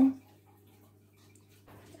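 A near-quiet pause with a faint, steady low hum and no distinct sounds.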